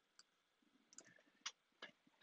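A few faint, short computer mouse clicks in near silence.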